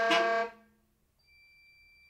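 A saxophone ensemble holding a loud chord together that cuts off sharply about half a second in. Then near silence, with a faint high steady tone from a little past one second.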